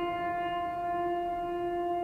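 Background music holding a single long note, steady in pitch, with a rich set of overtones.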